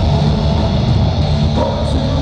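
Punk rock band playing live: electric guitar, bass and drum kit, recorded from the crowd with poor sound quality.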